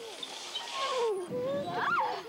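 Girls' voices calling out and squealing, with gliding pitch: a long falling call, then a sharp rising squeal near the end.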